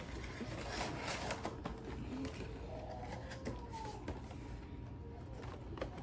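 Light taps and knocks of cardboard Funko Pop boxes being handled and set down on carpet, a few scattered clicks, with a faint wavering tone underneath.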